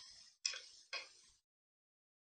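Two light taps of a stylus tip on a tablet's glass screen, about half a second apart, each trailing off briefly.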